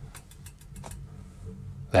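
Motorhome gas fire burning just after being lit, a low steady rumble that sounds like a train, with a few faint ticks in the first second.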